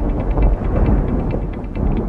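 A loud, dense rumble, heavy in the bass, with music under it.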